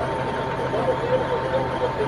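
A steady engine hum with a thin, steady high tone, under indistinct voices talking in the background.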